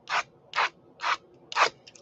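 Hands making a steady run of rubbing strokes, four in all, about two a second.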